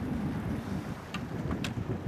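Wind rumbling on the microphone over open sea, with the low wash of choppy water around a drifting boat and a couple of faint clicks.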